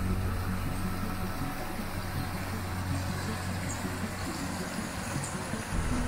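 Low, steady drone of ambient background music over the even rush of a small stream running over rocks. The drone shifts slightly near the end.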